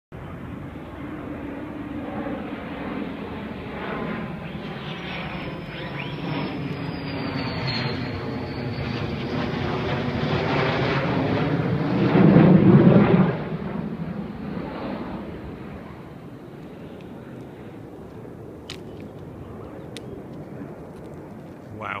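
McDonnell Douglas F-15 fighter jet's twin turbofan engines during a flypast: the jet noise swells, is loudest for a moment about twelve seconds in as the jet passes overhead, then fades away as it flies off.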